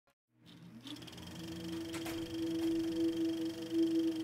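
Music intro: a single held note slides up into pitch and swells in steadily, with a couple of faint clicks along the way.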